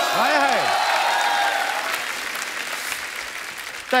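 Studio audience applauding and cheering after a punchline, with a voice calling out over it near the start; the applause then fades out gradually.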